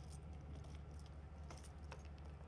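A bunch of keys jingling faintly and a key clicking in a trailer door's keyed latch as it is unlocked, a few light clicks spread across two seconds. A steady low hum runs underneath.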